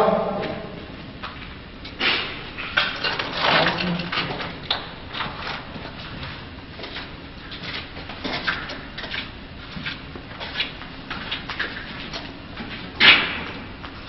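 Footsteps: irregular scuffs and crunches of feet on the ground, with a louder one about a second before the end.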